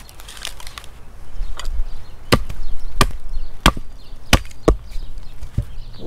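A bark-covered log being split lengthwise with hand tools: light cracking of wood at first, then about six sharp blows on the wood at roughly one every half to three-quarters of a second, starting about two seconds in.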